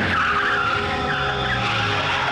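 Car tyres screeching in a wavering skid as a car brakes hard to a stop.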